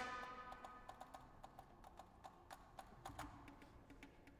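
Quiet contemporary ensemble music. A swelling chord dies away at the start, then come sparse, irregular clicks and taps, a few a second, some with a short pitched ring.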